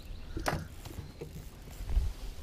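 Light knocks and handling noise in a small boat over a low rumble, with a heavier thump near the end.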